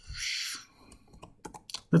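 Computer keyboard typing: a quick run of keystrokes in the second half as a short code is typed. A short hiss comes just before, about half a second long.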